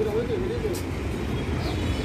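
Steady street traffic rumble, with a person's voice heard briefly in the first half second.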